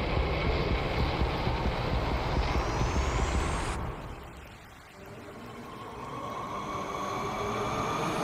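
Dark rumbling noise with a rising whoosh that cuts off sharply about four seconds in, then a drone that swells steadily louder: the build-up intro to a wrestler's entrance theme.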